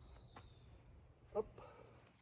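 Quiet outdoor ambience with a single short spoken word, "up", about one and a half seconds in, and a faint thin high whistle near the start.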